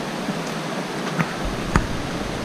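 Mountain stream running over rocks, a steady hiss of flowing water, with a couple of short knocks in the second half.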